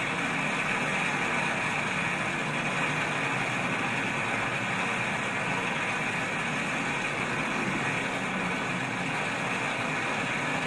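Ariane 4 rocket firing its engines and strap-on boosters as it climbs after lift-off: a steady, even rushing noise without distinct tones.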